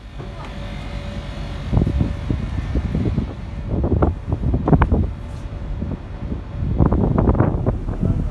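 Wind buffeting the phone's microphone on an open ship's deck: a low rumble with uneven gusts, heaviest a couple of seconds in and again near the end. A faint steady hum sits under it for the first few seconds.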